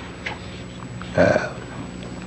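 A brief guttural throat sound from a man close to the microphone, about a second in, over the steady low hum and hiss of an old recording.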